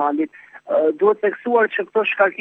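Speech only: a news voice-over in Albanian, with a brief pause about half a second in.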